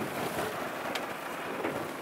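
Steady rushing noise of wind and sea aboard a small fishing boat in rough, windy weather, with one faint click about a second in.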